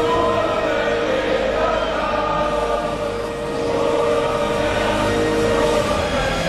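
Many voices singing together in chorus, holding long sustained notes.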